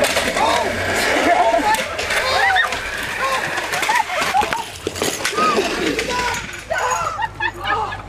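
Excited shouting and yelling from several voices over steady wind and road noise as an office chair is towed behind a car, its casters rattling over the pavement. The chair tips over before the end.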